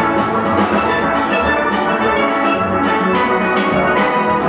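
Steel band playing: many steel pans struck together in dense runs of ringing notes over a steady rhythm.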